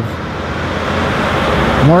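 A car driving past close by on the street, its tyre and engine noise a rushing sound that grows louder as it approaches.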